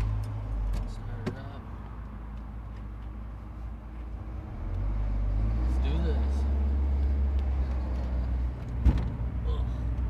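An NA Mazda Miata's four-cylinder engine running just after start-up, its low rumble growing louder and deeper at about five seconds as the car pulls away. Near the end a single sharp thump as the lowered car bottoms out.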